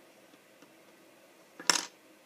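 A plastic LEGO minifigure tips over and clatters onto a wooden tabletop: a brief cluster of hard clicks near the end, with quiet room tone before it.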